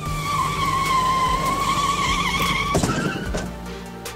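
Dubbed tire-screech sound effect: a wavering high squeal lasting about two and a half seconds, ending in a short crash noise as the toy car flips over, with background music under it.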